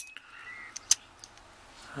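Keys on a ring clinking against a brass shutter padlock as it is handled: a sharp click at the start with a faint metallic ring after it, and another click about a second in.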